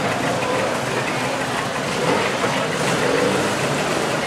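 Distant rally car engine running at speed across the course, its faint note shifting in pitch under a steady wash of background noise.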